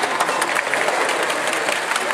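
A long rake of model railway goods wagons running past on the track, their wheels giving a dense, rapid clatter of clicks.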